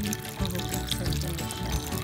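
Background music over water running and splashing onto potatoes being washed in a steel bowl.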